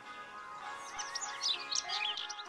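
Soft background music with birds chirping over it; a quick run of short, high chirps comes in about half a second in and grows busier and louder toward the end.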